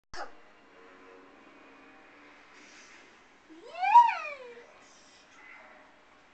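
A young child's single high squeal about four seconds in, rising then falling in pitch, from a toddler swinging in a baby-wrap swing. A click at the very start and a faint steady hum lie under it.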